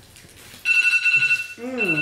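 A timer alarm goes off about two-thirds of a second in: a loud, high electronic ringing tone that holds for about a second, then carries on in shorter beeps, signalling that the time for the decorating round is up.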